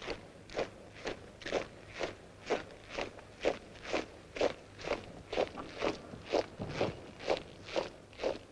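A squad of naval cadets' boots striking a paved parade ground in unison at quick march, a steady, even tramp of about two steps a second.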